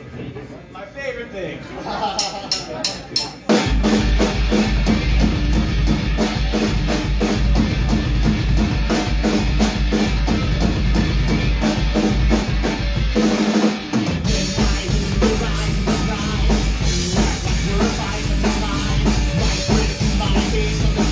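Live punk rock band starting a song: a few quick, evenly spaced drum hits, then electric guitars, bass and drum kit come in together about three and a half seconds in and play loud and fast. The bass and drums drop out for about a second near the middle before the full band comes back in.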